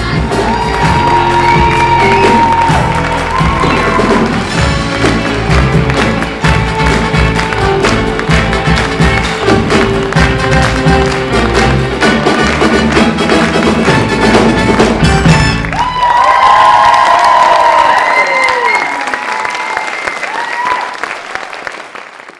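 Band music with an audience clapping and cheering. About two-thirds of the way through, the bass drops out, leaving held, sliding high notes that fade away at the end.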